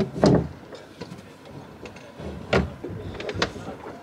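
A few short knocks and clunks as an outboard motor is lowered on its stern mount, the loudest about a quarter second in and another about two and a half seconds in, with a couple of light clicks near the end.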